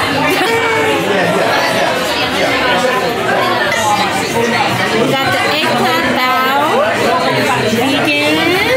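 Restaurant chatter: many voices talking over each other at a steady level, with no pauses.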